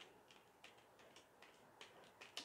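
Near silence, with a few faint, soft clicks of a palette knife working thick acrylic paint on paper.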